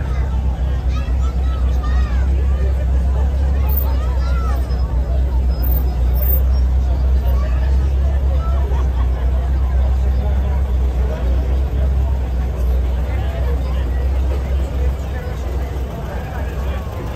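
Crowd chatter over a low, steady rumble of slow-moving classic cars, among them an air-cooled Volkswagen Beetle.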